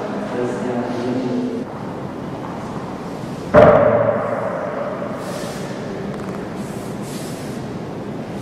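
Indistinct voices murmuring in a large, echoing hall, then a single sudden thump about three and a half seconds in that rings and fades over a second or so.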